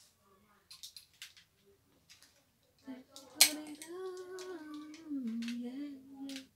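Small plastic clicks and taps as a ring light is fitted onto its stand's mount, then about halfway in a woman humming a few long held notes that step down in pitch. A sharp click, the loudest sound, comes just as the humming starts.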